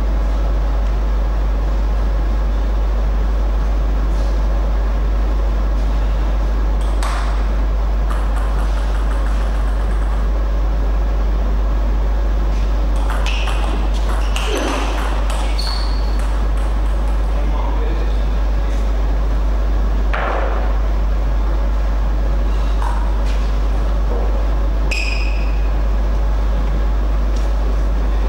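Celluloid-type table tennis ball clicking off bats and the table in a short rally about halfway through, with scattered single ball bounces before and after, over a loud steady low hum. A short high squeak comes near the end.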